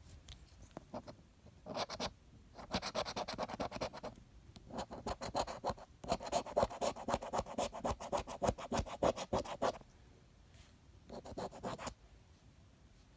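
A coin scratching the coating off a paper scratch-off lottery ticket in quick back-and-forth strokes. It comes in several bursts with short pauses, the longest run lasting about five seconds in the middle.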